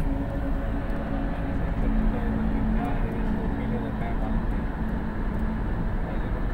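Steady road and engine noise of a moving car, heard from inside the cabin: a continuous low rumble with a faint hum.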